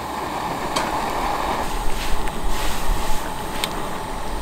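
Steady rushing noise from an outdoor gas ring burner heating a wok of water in which bok choy and wood ear mushrooms are blanching, with a few faint clicks.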